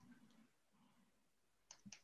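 Near silence, then a few faint computer-keyboard clicks in quick succession near the end.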